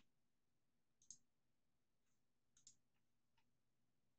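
A few faint computer mouse clicks in near silence: one about a second in, then a quick pair and a couple of softer clicks past the middle.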